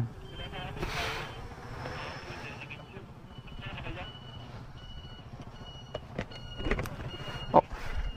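A low rumble of an idling scooter engine and passing traffic, with a run of short, high electronic beeps repeating irregularly from a few seconds in. A couple of light clicks come near the end.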